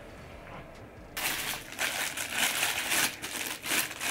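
Faint room tone, then about a second in a sudden switch to loud crinkling and rustling of a plastic shopping bag being handled, full of sharp crackles.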